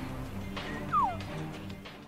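Background music with a single short, falling mew about a second in, the loudest sound: an elk cow call.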